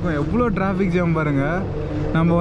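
A man talking, with road traffic running in the background.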